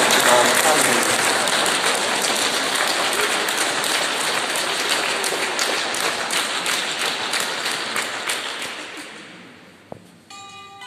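Audience applauding, the clapping slowly fading and dying out about nine seconds in.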